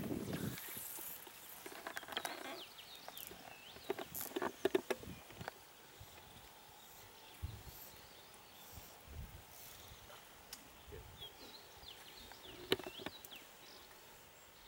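Quiet outdoor ambience with scattered high bird chirps, early on and again near the end, and a few sharp clicks and knocks, clustered about four to five seconds in with one more near the end.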